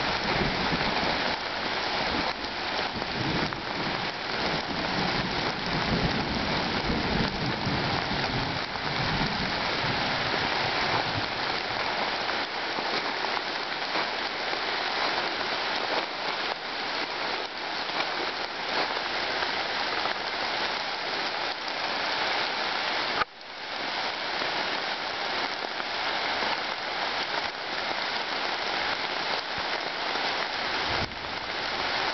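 Steady rain falling on the leaves of a deciduous forest, an even hiss throughout. The sound cuts out for a moment about two-thirds of the way through.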